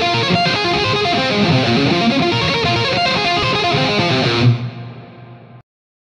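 Electric guitar playing a fast shred lick of rapid single notes, then landing on a lower held note that rings and fades for about a second before the sound cuts off.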